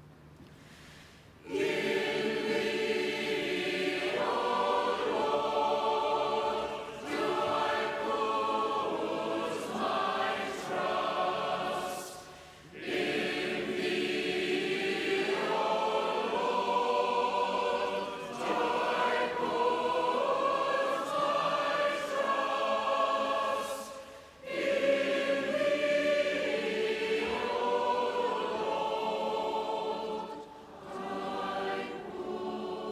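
A choir singing a sacred hymn in long, held phrases, with a short break between phrases about every eleven seconds. The singing starts about a second and a half in.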